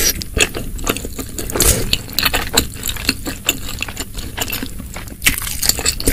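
Close-miked chewing of a mouthful of spicy seblak: a run of short, irregular clicks and crunches, busier near the end.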